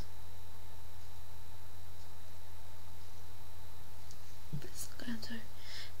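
Steady low electrical hum with a faint thin tone above it, with faint whispered or muttered words about four and a half seconds in.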